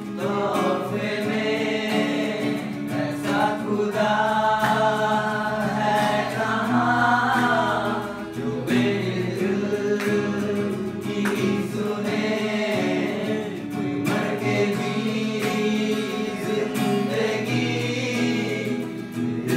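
Live Christian worship song: several voices singing together over strummed acoustic guitar and sustained keyboard chords.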